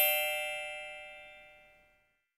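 A bell-like chime sound effect, struck just before, ringing with one lower tone and a cluster of high shimmering tones, dying away steadily and gone shortly before the end.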